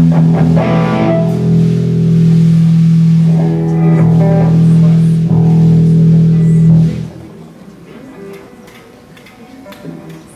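A live band, with electric guitar and electric bass, plays through an amplified PA with a long held low note, then stops about seven seconds in, leaving low room noise.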